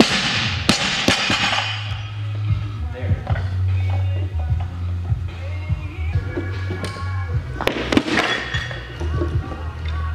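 Background music with a steady bass line. A barbell loaded with rubber bumper plates is dropped from overhead onto the lifting platform at the start, crashing and then bouncing twice. Another impact comes about eight seconds in.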